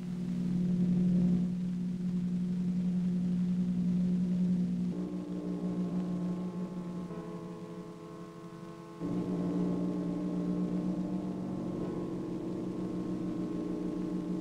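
Soundtrack drone: a sustained low chord of steady tones, which shifts to new notes about five seconds in and again about nine seconds in.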